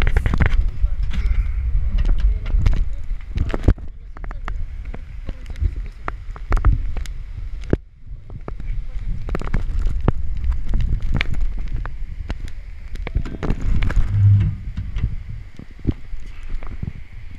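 Wind buffeting a body-worn action camera's microphone, with a busy clatter of knocks and clicks from harness hardware and the metal jump platform as the bungee jumper is pulled back on board and climbs onto the grating.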